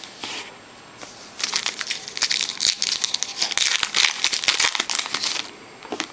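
Foil wrapper of a trading-card pack crinkling and crackling as it is handled and torn open. The crinkling starts about a second and a half in and keeps on busily until near the end.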